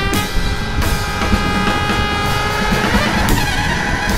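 Background music with long held chords over a steady low beat, the chord changing about three seconds in.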